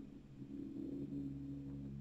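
A low, steady hum, most likely a man's drawn-out wordless 'mmm' hesitation at a held pitch, starting a moment in and holding for over a second.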